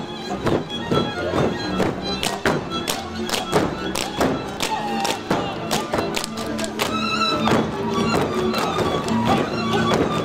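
Live Kalotaszeg (Transylvanian Hungarian) folk dance music played by a string band, with the dancers' boots stamping and hands slapping boot-legs in quick rhythm with the tune.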